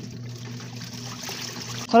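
Top-loading washing machine agitating a load of clothes in soapy water: steady water swishing over a low, even motor hum.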